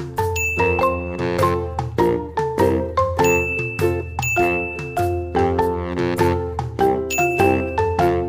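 Background music of bright, bell-like struck notes, several a second, over a steady low bass.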